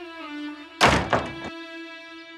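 A wooden door slammed shut with a loud thud about a second in, over background music.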